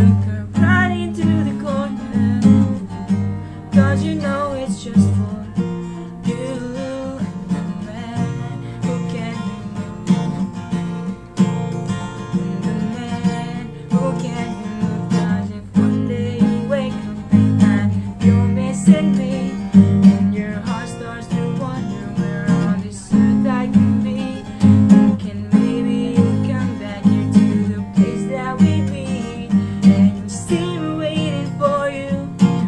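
Acoustic guitar with a capo, strummed in a steady rhythm with chords ringing on.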